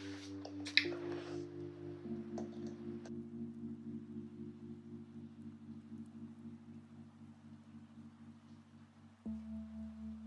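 Soft background music: slow sustained chords held for several seconds each, moving to a new chord about nine seconds in. A few faint clicks sound in the first few seconds.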